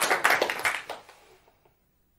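Audience applauding, the clapping dying away within about a second and a half.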